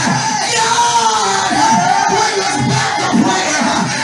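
A preacher's voice through a microphone, shouted and half-sung in a long wavering tone over music, with a congregation calling out.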